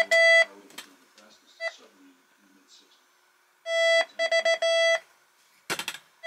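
Electronic beeping: a buzzy beep tone held briefly at the start, a few short blips, then after a quiet stretch a run of quick repeated beeps lasting about a second and a half.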